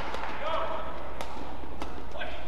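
Badminton rackets striking the shuttlecock during a fast rally, two sharp hits a little over half a second apart, over the ambience of the hall. A brief squeak comes about half a second in.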